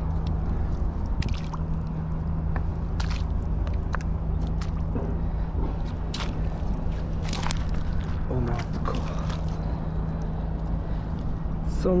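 Rubber boots squelching in soft estuary mud and stepping onto wet seaweed: a few scattered wet squishes and clicks over a steady low hum.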